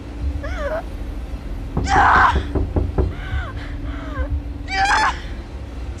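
A young woman screaming and sobbing in distress, with short gasping cries. The loudest, harshest scream comes about two seconds in, and a long wailing cry comes near the end.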